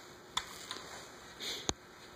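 Quiet handling sounds of a small foam RC airplane: a faint click, a short breathy hiss, then a sharp tap near the end as it is set down on the table.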